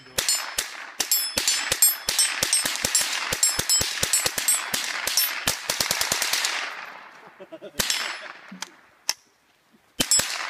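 Rifles firing in rapid, overlapping shots from more than one shooter, about four a second, each followed by an echo, for about six seconds. The firing then dies away to a couple of single shots near the end.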